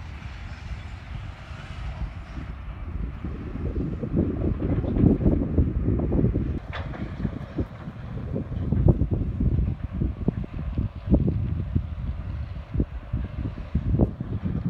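Wind buffeting the microphone: an irregular, gusty low rumble that surges loudest around 4–6 seconds in and again around 9 seconds in.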